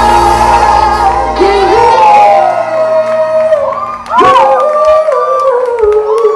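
Live music with singing in a large room: held notes over a bass that drops out about two seconds in, then after a brief dip near four seconds, voices whooping and singing.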